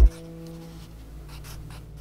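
A loud swell cuts off sharply at the very start, then a pencil scratches on paper over a faint, steady low hum.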